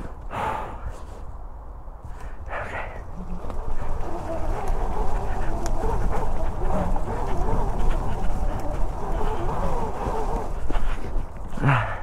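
A man breathing heavily and panting after exertion, over a low rumble. A wavering, steadier sound that gets louder about four seconds in is the electric dirt bike moving along the trail.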